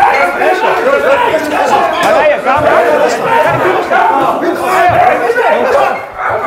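Several people shouting and talking over one another at once, loud and tangled, during a physical scuffle.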